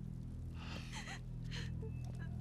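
Low sustained drama score music, over which a person gasps in sharp breaths about half a second in and again around a second and a half.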